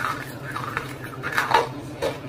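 Close-miked chewing of roasted clay: several short, crisp crunches in quick succession as the pieces break between the teeth.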